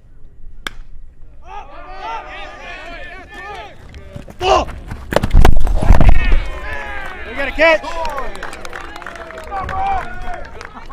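A single sharp crack as the pitch reaches the plate, about a second in, then players and spectators shouting and calling out at the ballpark, with a loud burst of low knocking in the middle.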